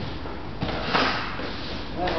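A short swishing rustle, loudest about a second in, from karateka moving in cotton gi on a wooden floor during partner practice.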